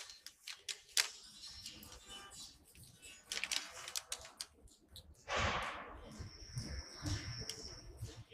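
Paper bag rustling and crinkling as a hand reaches into it, with scattered small clicks and one louder stretch a little past halfway.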